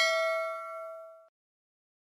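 Notification-bell chime sound effect of a subscribe-button animation, a bright bell tone ringing and fading away over about a second.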